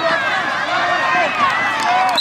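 Football stadium crowd cheering and yelling, many voices shouting over one another.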